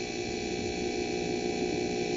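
A steady hum made of several constant tones, the background noise running under a sermon recording.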